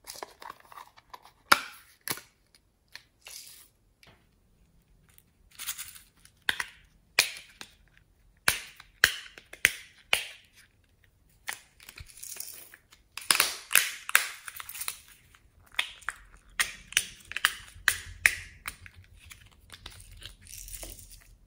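Small plastic containers of craft beads and sprinkles being handled: a string of sharp plastic clicks from lids snapping open and shut, with short rattles of beads and sprinkles shaken out onto slime.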